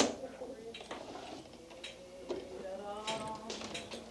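Faint, indistinct voices with a few scattered clicks and knocks; a sharp click comes right at the start.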